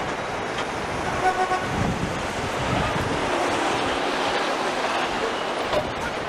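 Traffic noise: a steady hiss of passing vehicles, with a short horn toot about a second in.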